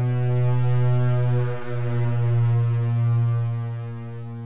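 Soundtrack music: one low synthesizer drone note held steady, dipping briefly about one and a half seconds in.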